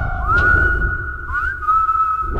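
A dramatic whistle-like sound effect: a single high tone that slides up into a held note twice, over a low rumble.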